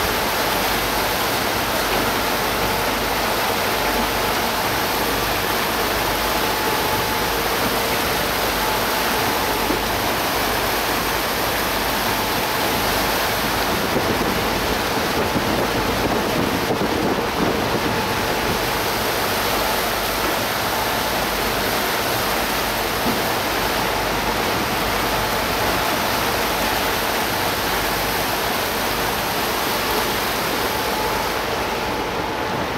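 Steady rush of water and air past a moving sightseeing boat, with a faint steady hum underneath.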